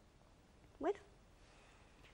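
A pause in a woman's speech, with only quiet room tone, broken about a second in by one short spoken word, 'bueno', rising in pitch.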